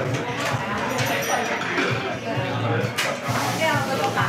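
Kitchen scissors snipping through a sugarcane prawn, two crisp cuts about half a second and three seconds in, over steady restaurant chatter and low voices.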